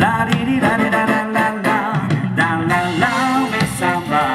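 A live band with a horn section, electric guitar and percussion playing an upbeat number, with a lead vocal over a steady beat.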